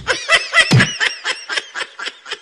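Someone snickering: a fast run of short, high laughs, several a second, growing fainter near the end.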